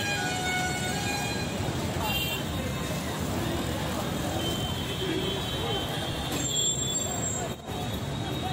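Busy city road traffic: engines of passing motorbikes and cars, with vehicle horns tooting now and then and people's voices talking in the background. The sound drops out briefly near the end.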